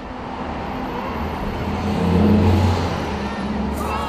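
City street traffic: a steady rumble of road vehicles, louder for a moment about two seconds in as a vehicle goes by.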